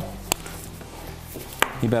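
Two short, sharp knocks about a second and a half apart as seasoning containers are handled over a baking tray of potatoes.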